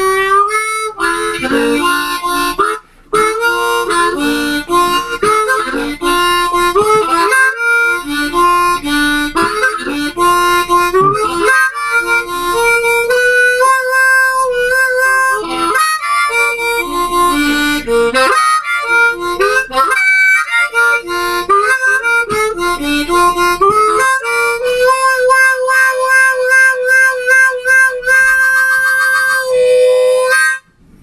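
Blues harmonica played solo with the hands cupped around it: a run of quick notes, some of them bent, with a brief break about three seconds in. It ends on a long held note with a fast, even warble.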